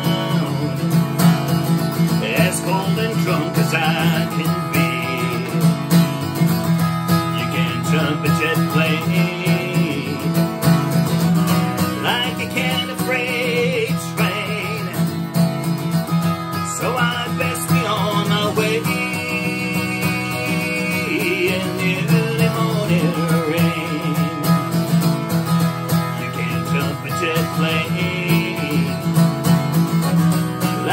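Steel-string acoustic guitar played solo, strummed and picked in a steady country rhythm.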